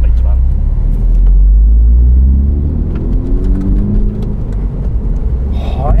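Engine of a 2016 MINI John Cooper Works with a REMUS exhaust, a 2.0-litre turbocharged four-cylinder, pulling hard under acceleration. A deep rumble comes first, then the engine note rises steadily in pitch over about two seconds before it eases off.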